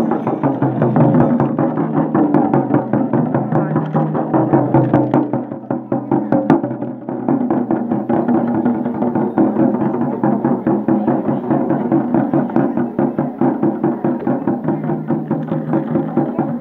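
Several shamans' double-headed frame drums (dhyangro) beaten together with curved sticks in a fast, steady, driving rhythm, briefly softer a little past the middle.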